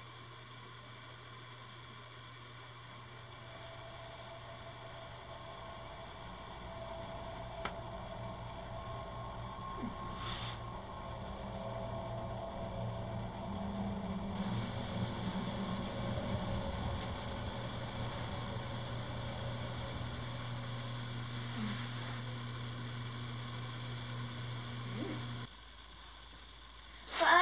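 Steady low electrical hum with hiss, the room's background noise with no other clear event; one faint click about eight seconds in.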